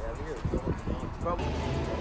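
Brief snatches of a voice over a steady low rumble of outdoor background noise.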